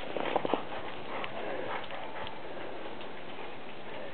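A dog's paws crunching in snow: a few soft steps in the first second, then a steady faint hiss with an occasional light tick.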